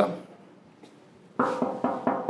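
Three quick knocks with a hollow ringing tone, starting about one and a half seconds in, like knocking on a door.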